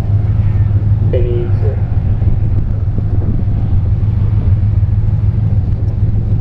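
Autocross car's engine idling steadily at the start line, a low even rumble.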